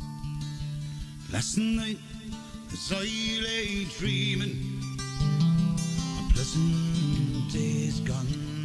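A man singing a slow ballad over a strummed Takamine acoustic guitar. The guitar plays alone for about the first second and a half before the voice comes in.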